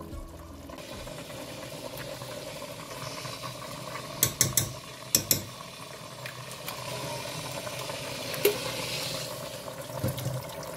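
Pots of food cooking on an electric hob, a steady sizzling hiss, with a few sharp clinks about halfway through and one more near the end.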